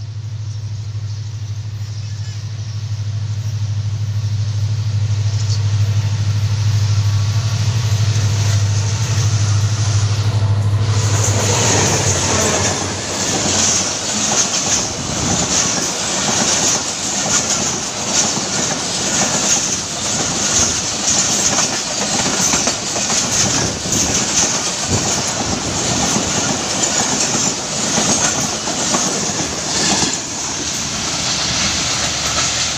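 Passenger train approaching and passing close by: a steady low locomotive drone grows louder, then about eleven seconds in it gives way to the coaches rolling past, wheels rumbling and clattering over the rail joints in an irregular clickety-clack.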